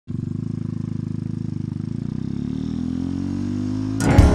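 Single-cylinder engine of a 2015 Cleveland Cyclewerks Tha Ace motorcycle running with a rapid, even pulse, then rising in pitch over the last two seconds as the bike accelerates.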